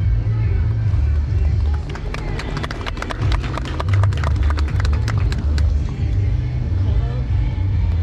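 Wind rumbling on the microphone, with a dense run of sharp, uneven clicks from about two seconds in until a little before six seconds.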